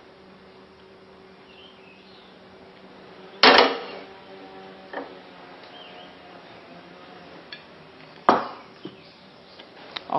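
Metal frying pan and crockery clanking: a loud clank with a short ring about three and a half seconds in, a small knock, and another clank near the end, over a faint steady hum.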